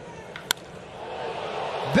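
A single sharp crack of a baseball bat meeting the ball about half a second in, then the ballpark crowd's noise building as the ball carries.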